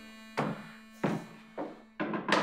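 High-heeled shoes clicking on a stone-tiled floor: three footsteps about 0.6 s apart, over a faint steady hum.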